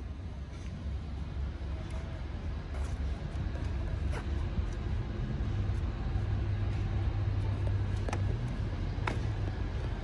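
A car engine running with a deep, steady low rumble that grows louder, with a few faint clicks.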